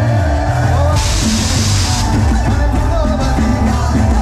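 Live band music through a concert PA, with many voices from the crowd singing and shouting along. A bright hiss, like a cymbal wash, about a second in lasting about a second.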